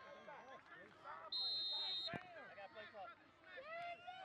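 A whistle, most likely the referee's, blown once in a short steady high blast of under a second, about a second and a half in. Voices call out around it, and a sharp knock sounds just after the blast ends.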